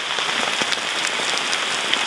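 Heavy rain mixed with hail pelting an umbrella canopy: a dense, steady patter scattered with sharp ticks of individual impacts.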